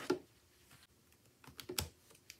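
Hard plastic items and a spiral-bound planner being set down and shifted on a tabletop by hand: a light clack at the start, then a quick cluster of taps and clacks near the end.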